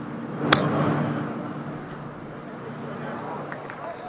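Golf club striking a ball for a short chip shot off bare ground: one sharp click about half a second in, over steady background murmur.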